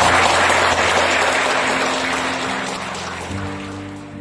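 Applause that fades away over soft background music of held low notes, which change pitch twice.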